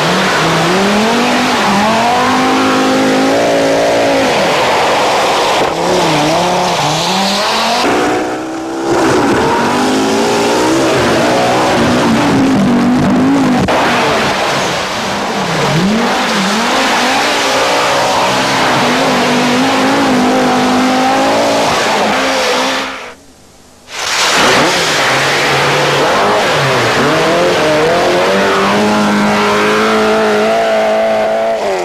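Rally cars driven flat out, several in turn, their engines revving hard with the pitch climbing and dropping again and again through gear changes. The sound dips briefly about eight seconds in and drops almost to silence for about a second near 23 seconds in.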